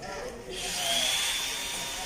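A small electric motor switches on about half a second in and runs with a high, steady whine over a hiss.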